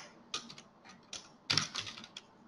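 Computer keyboard typing: a few separate keystrokes, then a quick run of several keys about three-quarters of the way through.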